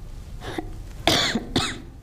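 A person coughs twice, about half a second apart, after a softer one.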